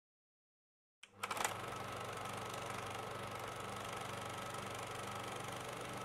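Film projector running: a steady mechanical whir and rapid clatter over a low hum, starting with a few clicks about a second in.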